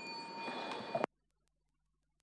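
A small bell ringing out after a single strike, its clear tones fading slowly over the hum of a hall. The sound cuts off abruptly about a second in.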